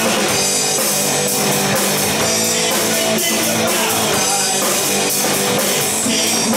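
Live rock band playing loud: electric guitars over a drum kit keeping a steady beat.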